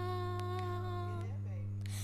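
Music playing from vinyl records on DJ turntables: a long held note over a steady low drone. The note breaks off a little past a second in.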